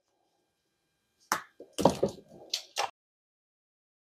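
The plastic outer sheath of 14/2 Romex cable being cut and pulled apart by hand, heard as a handful of short, sharp snips and tearing sounds over about a second and a half, starting just over a second in.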